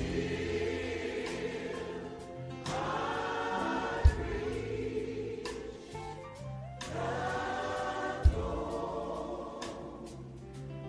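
Gospel choir singing in long held chords, the harmony changing every few seconds, with two deep thumps, one about four seconds in and one near the end.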